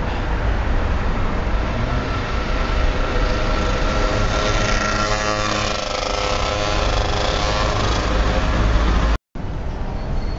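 City street traffic: car and motorbike engines passing over a steady low rumble. A passing engine's pitched drone is loudest about five to six seconds in. The sound cuts out for a moment near the end.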